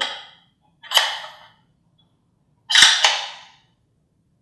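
Metal telescope fittings knocking as a two-inch adapter is slid into the focuser's draw tube. There is one sharp clack about a second in, then two sharp clicks about a quarter second apart near three seconds, each dying away quickly.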